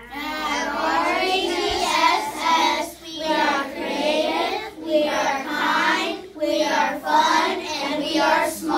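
Children's voices chanting the school mission statement together in unison, in short phrases with brief pauses between them.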